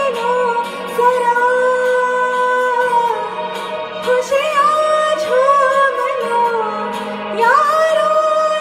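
A young woman singing a Bollywood love song, holding long notes that waver and glide up and down between phrases.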